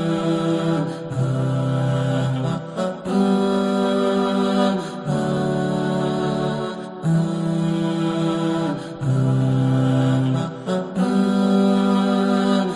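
Background music: a calm, vocals-only nasheed, with voices singing long held notes in phrases of about two seconds, each followed by a short breath-like break.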